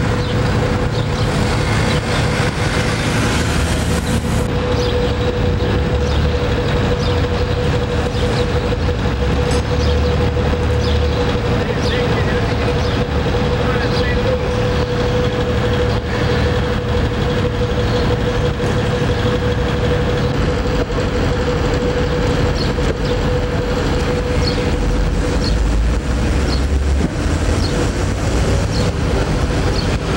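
Steady low rumble of idling truck engines and street noise, with a constant droning tone over it.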